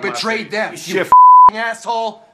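A man shouting angrily, cut just over a second in by a short, steady, high censor bleep lasting under half a second that covers a swear word, then the shouting goes on.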